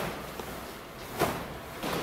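Two brief swishes of a taekwondo uniform's fabric as the arm swings through a bear-hand strike, one at the start and one a little over a second in, with quiet room tone between.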